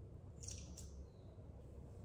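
Faint scraping of a disposable mascara wand being pushed into and worked in a clear mascara tube, two short scrapes about half a second in, otherwise near quiet.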